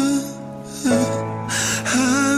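Acoustic cover song: a singer's voice over acoustic guitar holds a note, breaks off, and takes an audible breath about a second and a half in before singing again near the end.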